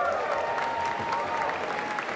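Audience applauding in a large hall, with a drawn-out cheer held over the clapping.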